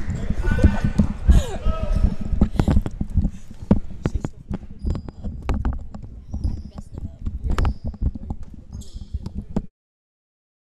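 Basketball being dribbled on a hardwood gym floor, a string of sharp bounces, with shouting voices in the first two seconds and short high sneaker squeaks later on. The sound cuts off abruptly just before the end.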